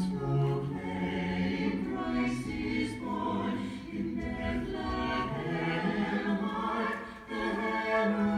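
A choir singing a slow piece with long held notes, with a brief pause about seven seconds in.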